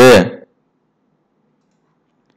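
A man's voice finishing a word in the first half-second, then near silence.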